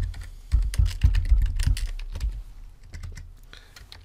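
Typing on a computer keyboard: a quick run of keystrokes, each click with a dull thud, thinning out in the second half.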